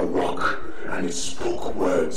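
A person's voice, loud and emotional, with the words not made out.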